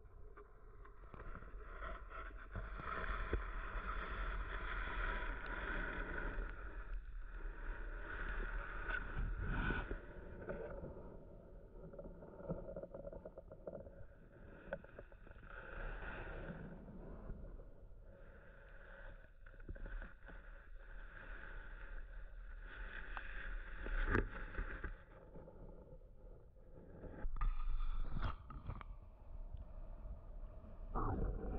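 Muffled underwater water noise picked up by a camera submerged in a pond, a murky, rumbling wash with a few sharp knocks from the housing being handled or bumping against stems.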